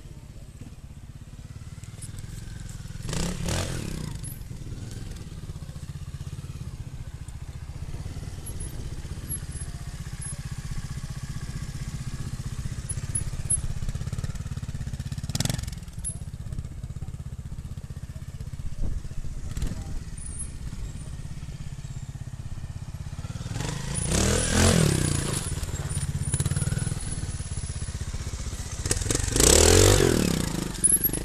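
Trials motorcycle engine running at low revs, with short throttle blips and a few sharp knocks. Near the end the bike revs up and down hard as it is ridden up onto a boulder, and this is the loudest part.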